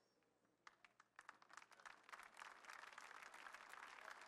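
Faint applause from a congregation: a few scattered claps about a second in, building into steady clapping.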